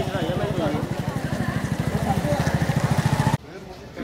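A small engine running steadily with a rapid, even low pulse, with voices talking over it; it cuts off abruptly shortly before the end.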